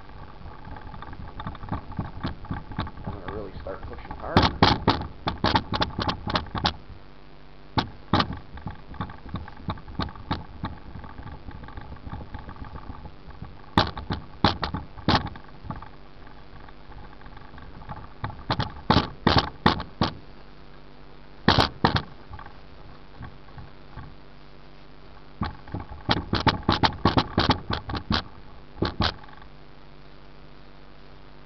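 A rag loaded with rubbing compound scrubbed hard back and forth by hand over a car's clear-coated hood, buffing out a wet-sanded scratch. The strokes come in quick runs of several a second, with pauses between the runs.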